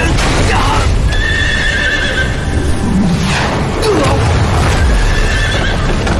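Horses whinnying, two calls with falling pitch, about half a second in and again about three seconds in, over a loud, steady low rumble.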